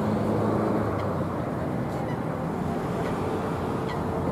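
Steady low engine hum from road traffic or heavy machinery, with a few brief high chirps sweeping downward.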